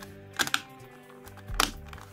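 A few sharp plastic clicks as the hinged shell of a cap-shaped Transformers toy is pressed shut, two close together about half a second in and one more near the end, over quiet background music.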